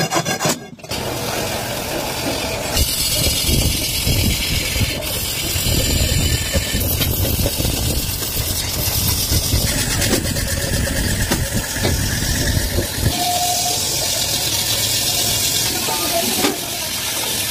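A lathe spinning a metal kadhai while a hand-held cutting tool scrapes and shaves its surface: a steady motor run with a rasping scrape over it. The scraping changes character several times.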